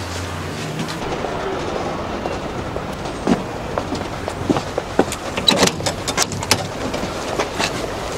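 Steady outdoor traffic rumble, with footsteps on a path and a run of sharp knocks at a front door in the second half.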